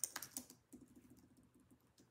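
Typing on a computer keyboard: a quick run of soft keystrokes in the first half second, then a few faint, scattered taps.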